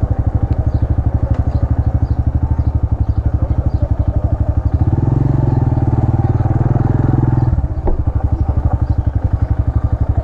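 Italika RC200's 200cc single-cylinder four-stroke engine running at low speed with an even pulsing exhaust beat. About five seconds in the throttle opens for a couple of seconds, the beat getting louder and rising in pitch, then it drops back to a low, steady pace.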